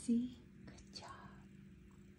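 A person's voice: one short, low voiced sound just after the start. It is followed by faint soft vocal sounds and a couple of small clicks at a low level.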